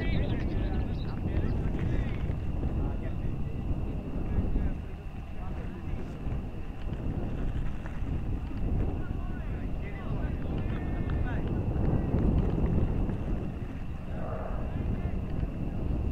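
Wind buffeting the camera microphone as an uneven low rumble, with faint distant voices and a thin steady high whine.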